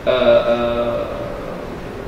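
A man's long, drawn-out "uhhh" hesitation, held on one steady pitch and slowly fading over about two seconds.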